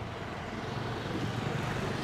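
A motor vehicle engine idling steadily with a low, even hum that grows a little stronger about halfway through, over general street noise.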